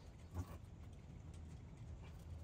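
A single dull knock about half a second in, from work on the WoodMizer LX55 sawmill's bed as a log is being positioned by hand, over a faint low hum.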